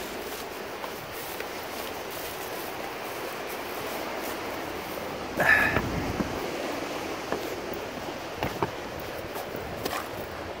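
Steady wash of sea surf against the rocky shore mixed with wind, with a few light footsteps on rock and grass; a brief louder scuffing sound comes about halfway through.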